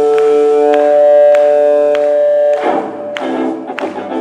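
Stratocaster-style electric guitar through a Marshall amp holding one long sustained chord, then breaking into quicker changing notes about two and a half seconds in. Light percussive ticks keep time underneath.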